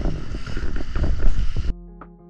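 Wind rushing over an action-camera microphone on a moving bicycle, with music underneath. About 1.7 s in, the noise cuts off suddenly and only clean music with plucked notes carries on.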